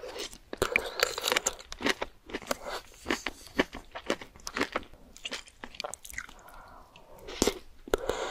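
Close-miked mouth sounds of a person chewing a soft, saucy bite of spicy egg shakshuka with melted cheese: a dense run of sharp, moist clicks and smacks.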